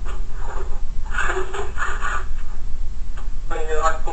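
Indistinct speech in short phrases over a steady low hum.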